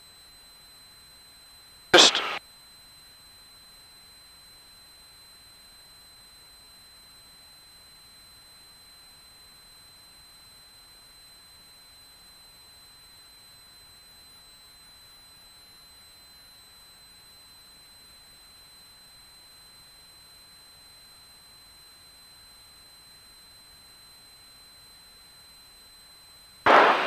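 Faint steady high-pitched electronic whine with light hiss from a light aircraft's intercom and radio audio feed, with no engine heard. One short loud burst of radio sound comes about two seconds in.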